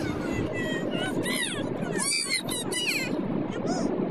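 Steady road and engine noise inside a car cabin at motorway speed, with high-pitched voices rising and falling in pitch between about one and three seconds in.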